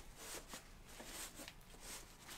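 Faint rustling and scuffing of fabric against cardboard as a hoodie is pushed down into a tall cardboard shipping box, with several soft scuffs.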